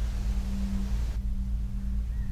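A steady low drone with a sustained hum-like tone. The faint high hiss above it cuts out suddenly just past the middle.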